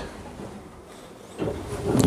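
Quiet room tone, then a soft shuffling and handling noise from about one and a half seconds in as the camera is carried through the tram cab's wooden doorway.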